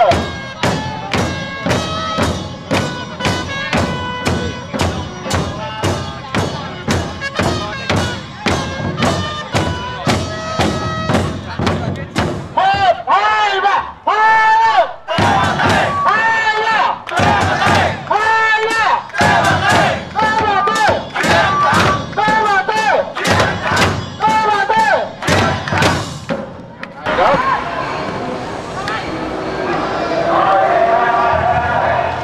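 Football supporters' drums beaten with sticks in a steady rhythm of about three beats a second, with held notes over them. From about halfway a crowd chants the same short phrase over and over in time with the drums, and near the end the drumming stops, leaving the noise of the crowd.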